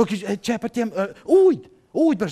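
A man's voice speaking and vocalising expressively in short bursts, with one drawn-out, hoot-like vowel about halfway through.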